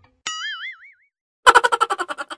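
A cartoon 'boing' sound effect, one pitched twang whose pitch wobbles wider and wider as it fades. About a second and a half in comes a short burst of rapid laughter.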